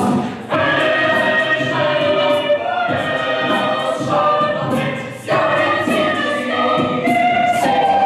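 Mixed a cappella group singing sustained chords in several voice parts, with no instruments. The chords break off briefly about half a second in and again just after five seconds in.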